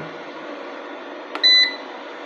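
A button click on a Homage solar inverter's keypad, followed at once by one short, high-pitched beep of about a quarter second: the inverter's key-press beep.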